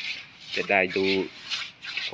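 A man speaking briefly in Thai, with a rough rustling or rubbing noise around his words.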